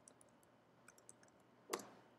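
Faint typing on a computer keyboard: scattered soft key clicks, with one louder keystroke near the end.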